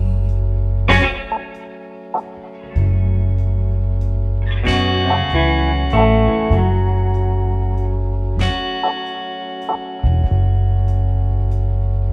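Blues band's instrumental passage between vocal lines. Electric guitar chords are struck and left to ring over bass, a new chord about every four seconds, with the bass dropping out briefly after the first and third.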